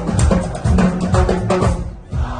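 Live band on stage playing loudly, a driving drum kit beat about four strokes a second over bass, which drops out abruptly just before the end.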